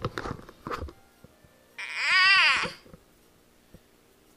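A toddler's single high squeal, about a second long, rising and then falling in pitch, a little under halfway through. Before it come a few short knocks.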